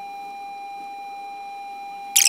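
A steady electronic beep tone held at a single pitch, with no change in level.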